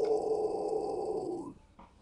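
A young man's low, guttural exhale scream, a rough growl held for about a second and a half before it stops. It is his low-pitch scream.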